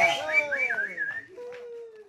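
Whistle-like gliding notes, several overlapping and mostly falling in pitch, ending on one long held note that cuts off at the end.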